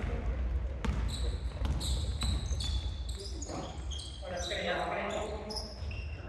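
Basketball bouncing on a hardwood gym floor during play, with sneakers squeaking in short high-pitched chirps. Players' voices come in and out in the echoing hall, strongest past the middle.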